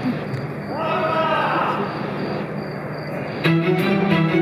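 Murmur of a large audience, with one voice calling out briefly about a second in. About three and a half seconds in, the band starts the song's introduction with sustained string notes, which are louder than the crowd.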